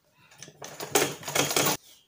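Domestic sewing machine running a seam through layered satin and tulle with a rapid mechanical clatter that builds up and then stops abruptly near the end.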